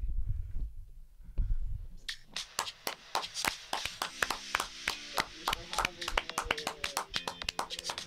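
Hands clapping in applause, a quick run of sharp claps starting about two seconds in and continuing to the end.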